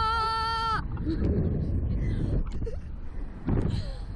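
A girl's high-pitched scream, held steady for a little under a second and then cut off, on the Slingshot reverse-bungee ride. After it, wind rushes over the microphone, broken by a few short gasps and laughs, with a louder one near the end.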